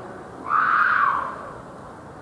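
A child's loud shriek, lasting under a second, about half a second in, over faint background chatter.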